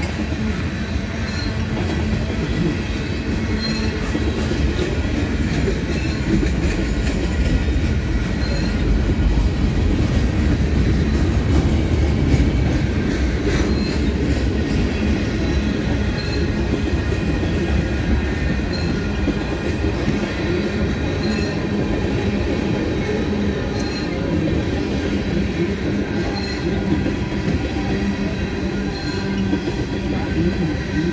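Freight train of tank cars rolling slowly past at close range: a steady low rumble of steel wheels on rail. A faint short high note recurs about every second and a half.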